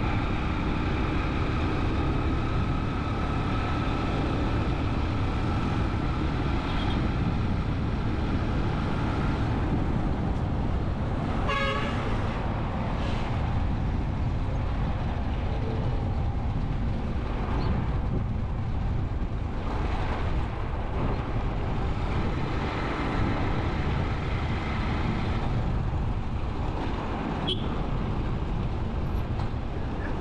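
Steady rumble of a vehicle travelling along a town road, with a short horn toot a little before halfway through.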